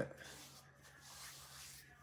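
Faint rubbing of fingertips on skin behind the ears, working in a drop of essential oil, over a quiet room.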